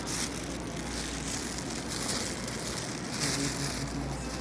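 Handling noise from fingers fumbling over a phone and its microphone: irregular crackly rubbing in short flares, over a steady low hum.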